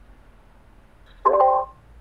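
A person's voice: one short vocal sound at a level pitch, about half a second long, a little past the middle, over a faint steady background hiss.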